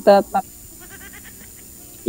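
A person's voice: two short syllables right at the start, then a lull with only faint background sound.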